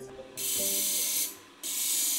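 Glass bottle's cut edge being ground flat against a spinning grinding disc, a high hissing grind. It comes in two spells of about a second each, with a short break between them.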